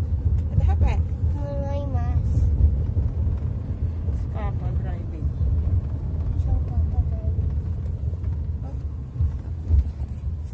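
Steady low road rumble of a moving car heard inside the cabin, with a few short high-pitched voice sounds from a child over it.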